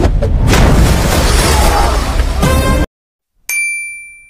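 Loud film soundtrack of music and effects with a heavy low end, which cuts off abruptly just under three seconds in. After a brief silence, a single bright ding rings out and fades.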